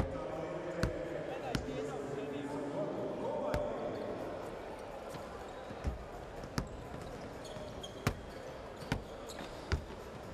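Basketballs bouncing on a hardwood court in an arena, single thuds at irregular intervals, over a murmur of crowd voices that fades after the first few seconds.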